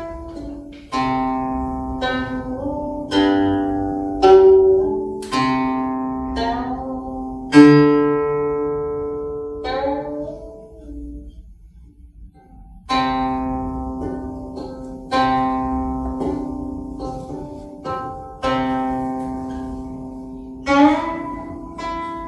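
Guqin played solo: single plucked notes and chords that ring and fade slowly, some bending in pitch as they sound. About halfway through, the notes die away into a short pause before the playing resumes.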